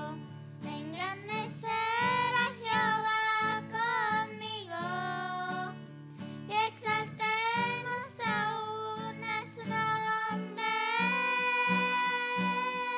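Two young girls singing a Spanish worship song to acoustic guitar accompaniment. Near the end they hold one long note over steady guitar strumming.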